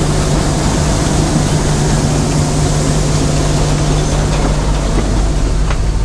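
Bizon combine harvester running loud and steady, heard up close beside the machine. The low hum changes about five seconds in.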